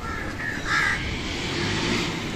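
Crows cawing, two short harsh calls within the first second, over steady outdoor background noise.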